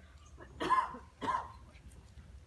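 A person coughing twice, the two coughs about half a second apart.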